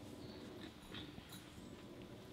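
Quiet hall room tone with a faint steady hum and a few soft scattered clicks and rustles.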